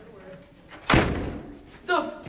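A single loud slam, a door banging shut, about a second in, with a short echoing tail.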